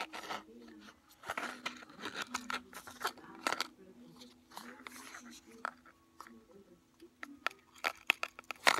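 Close handling noise: fingers fumbling with a small cardboard jewellery box right against the phone's microphone, a string of irregular clicks, scrapes and crunches.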